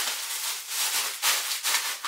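Plastic shopping bag crinkling and rustling steadily as it is handled to get purchases out.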